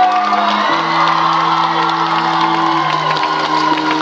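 Held keyboard chords changing slowly every second or two, with an audience cheering and whooping over them.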